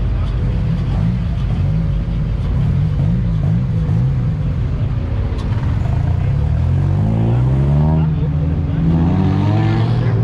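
Car engines running as sports cars roll slowly past one after another. From about seven seconds in, an engine revs up and its pitch climbs steadily toward the end.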